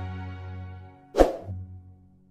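Background music fading out, then just over a second in a single loud, short pop with a quick falling swish: the sound effect of a subscribe-button animation popping onto the screen.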